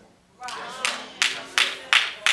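Hand clapping in a steady rhythm, about three sharp claps a second, starting just under a second in.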